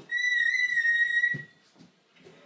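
African grey parrot giving one long whistle at a steady pitch, lasting about a second and a half.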